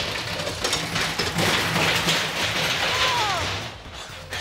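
A roller coaster train running on its track: a steady, noisy rumble with a short falling whine about three seconds in, fading near the end.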